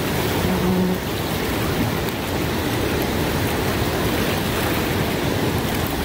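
Fast-flowing river rapids rushing steadily.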